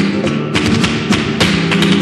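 Vintage flamenco recording of a colombiana: acoustic guitar playing under a quick, uneven run of sharp percussive taps and thumps.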